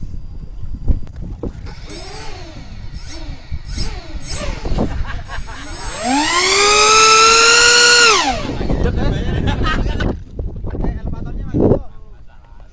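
RC ducted-prop plane's motor whining in short rising-and-falling throttle swells, then spooling up to a loud, high steady whine for about two seconds before it falls away and cuts. Rough rumbling noise follows.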